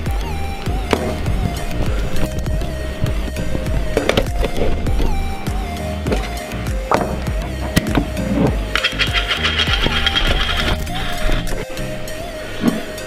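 Background music, with a few light knocks about four and seven seconds in.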